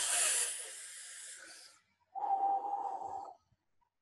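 A person taking a deep breath in, an airy hiss that fades over about two seconds. Then a shorter breath out carrying a faint steady tone, as part of a guided breathing exercise.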